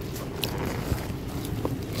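A soft bread sandwich being handled and bitten into: a few faint crackles and taps, with one dull knock about a second in, over a steady low hum.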